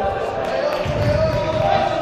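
Indoor football game in a large hall: players shouting to each other, echoing off the walls, with thuds of the ball being kicked about a second in.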